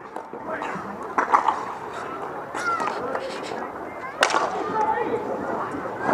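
Low, indistinct voices and rink chatter at an outdoor dek hockey game, with a few sharp clicks and one loud sharp knock about four seconds in.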